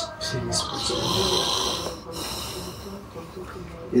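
A person breathing heavily: one long, noisy breath about a second in, then fainter breathing.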